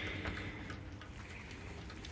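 Light rain falling: a faint, steady hiss.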